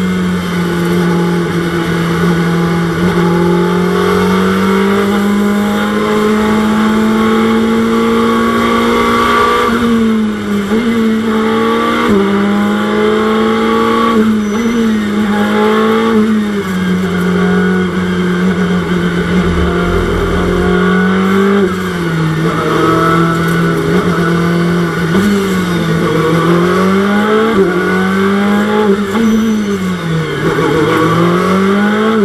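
In-car sound of a Ferrari 488 GT3's twin-turbo V8 racing engine running at moderate, fairly steady revs. Its note dips and climbs a little several times as the car is lifted and re-accelerated, never revving out, with road and tyre noise underneath.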